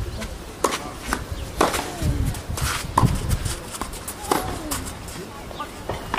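Tennis ball hit back and forth in a rally on a clay court: sharp racket strikes about every second and a half, with softer bounces between, and a short vocal sound from a player on some of the strokes.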